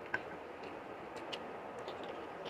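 Eating by hand: scattered small clicks and smacks from fingers working rice and curry on a plate and from chewing, the sharpest about a quarter second in, over a steady background hiss.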